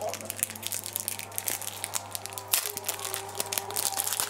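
A small clear plastic wrapper crinkling and crackling in quick, irregular bursts as fingers pick it open to free a plastic ring.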